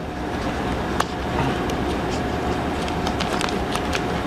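A clear plastic Ziploc sandwich bag being handled and opened, giving a sharp click about a second in and light crinkles later, over a steady background hum and hiss.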